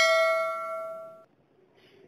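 A single bell-like ding ringing out and fading away over about a second. It is the notification-bell sound effect of an animated subscribe button.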